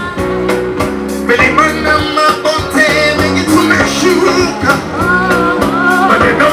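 Live band music: drum kit and hand drums keep a steady beat under deep bass notes, and a lead voice starts singing about a second in.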